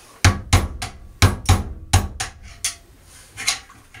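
Hammer striking the handle of a flathead screwdriver set against the small metal cap on the back of a spa pump motor, to knock the cap off: a quick, uneven run of about eight sharp taps over three seconds.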